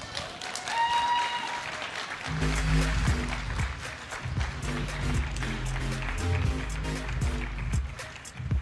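Audience applauding in a large hall, with a brief rising whoop near the start. From about two seconds in, background music with a steady low beat plays under the clapping.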